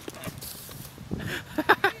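BMX bike tyres rolling over concrete with a few light knocks, and a person laughing briefly near the end.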